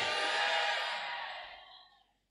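Congregation's voices answering together, blurred into a wash by the hall's echo, fading out over about two seconds.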